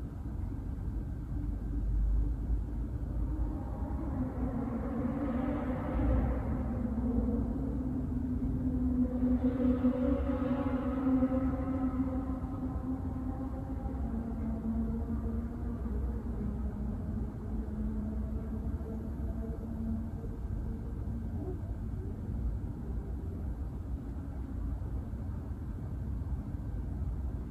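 A voice holding one long overtone-sung note. Its upper overtones swell twice and shift in pitch while the low note stays put, then it slowly fades out, over a steady low rumble.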